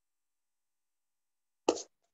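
Dead silence on a noise-gated video call, broken near the end by one brief, sharp sound.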